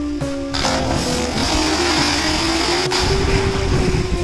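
Background music with held notes, over a loud splash about half a second in as a diver hits the water of a concrete well, then a steady rushing of churning water.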